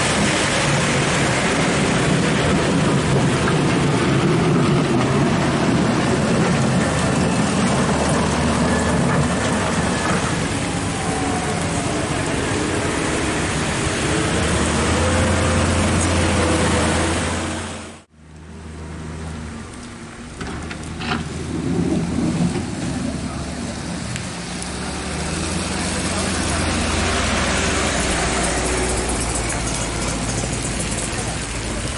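Heavy vehicles running slowly over a muddy road, with crowd voices in the background. A steady low engine drone swells, then the sound cuts off suddenly about two-thirds of the way through, and engine noise and voices come back in after it.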